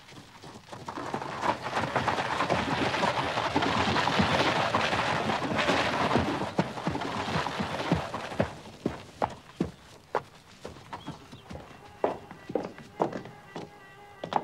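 Horse-drawn carriage on gravel: iron-tyred wheels crunching and a horse's hooves clopping, a dense continuous racket that thins after about eight seconds to separate, uneven hoof clops as the carriage draws up and stands.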